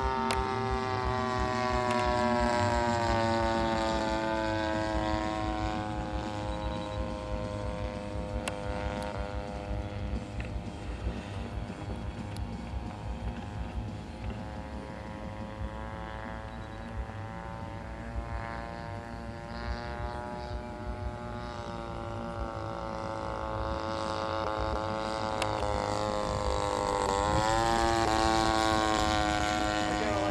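VVRC 20cc gasoline twin engine of a radio-controlled model airplane running steadily in flight, a droning tone whose pitch drifts slowly. It grows louder twice, a few seconds in and again near the end, when its pitch bends as the plane passes close.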